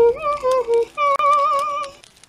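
A woman's voice humming a tune in a string of held, slightly wavering notes, stopping just at the end.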